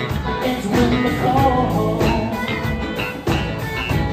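Live rock band playing: electric guitars, electric bass and a drum kit.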